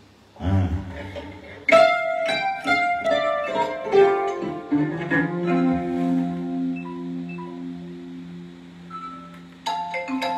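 Solo kora, the West African 21-string harp-lute, played by hand: a run of bright plucked notes starting a couple of seconds in, then two low notes left ringing for several seconds, and a fresh burst of plucking near the end.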